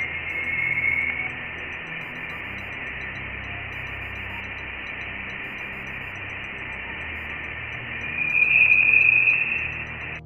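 Voyager 1 Plasma Wave Science recording of electron plasma oscillations (Langmuir waves) in interstellar plasma, played directly as audio: a steady hiss in a narrow high band, with a faint whistle-like tone in the first second and a louder, higher tone from about eight seconds in. The rise in pitch between the two tones marks the rising plasma density around the spacecraft.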